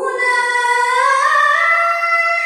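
A boy's voice chanting Quran recitation (tilawah) in a melodic style, one long held note that starts abruptly and climbs in pitch about a second in.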